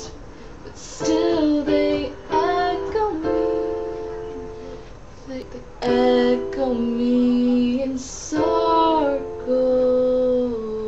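Electronic keyboard on a piano voice playing slow chords, each chord struck and left to ring and fade, a new one about every second or two.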